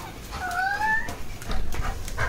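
A Labrador retriever whines once, a single upward-sliding call lasting under a second, followed by low thumps near the end.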